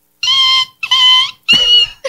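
A woman imitating a conure parrot's screech with her voice: three steady, high-pitched beeps, each about half a second, that sound like a microwave beep.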